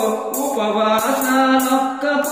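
Telugu devotional bhajan: a male voice holds a long sung vowel over the accompaniment, with a jingling percussion beat recurring about every half second.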